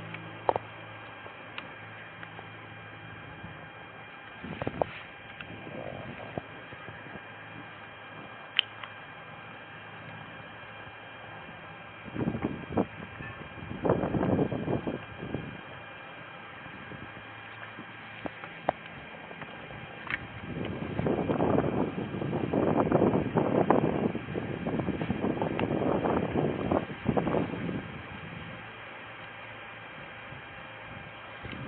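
A body-worn camera's microphone picking up a steady faint electrical hum and a few sharp clicks. Two stretches of rough rustling and rubbing stand out, a short one about twelve seconds in and a longer, louder one from about twenty to twenty-seven seconds, as clothing rubs against the camera while the wearer walks.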